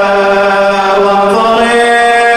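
A solo male voice chanting a religious lament through a microphone: long, held melodic notes, stepping up in pitch about one and a half seconds in.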